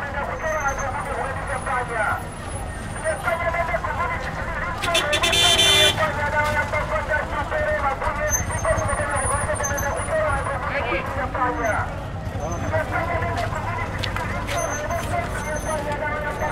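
Busy street ambience: many voices talking at once over traffic rumble, with a vehicle horn sounding once for about a second, about five seconds in.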